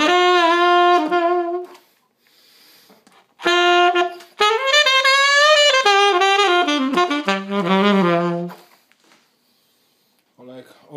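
Alto saxophone with an Oleg mouthpiece, played solo: a short phrase of held notes, a pause of about a second and a half, then a longer phrase with notes that bend in pitch.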